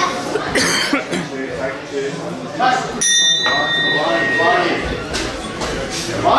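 A ring bell struck once about halfway through, a single ringing tone that fades over a second or so, signalling the start of the round. Voices shout from around the ring throughout.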